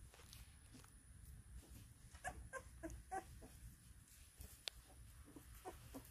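Faint short squeaks and whimpers from a newborn Maremma–Great Pyrenees puppy, in a cluster about two to three seconds in and again near the end. A single sharp click falls between them.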